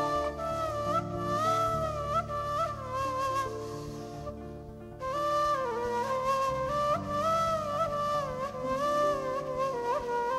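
Ney (end-blown flute) playing a slow, ornamented melody with slides between notes over a low sustained instrumental accompaniment. The melody fades around four seconds in and comes back strongly at about five seconds.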